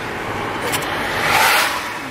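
Car driving, heard from inside the cabin: a steady rush of road and engine noise that swells a little in the second half.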